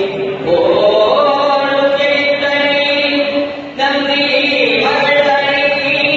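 A Hindu priest chanting into a handheld microphone, singing in long held notes with short pauses for breath, once near the start and again about four seconds in.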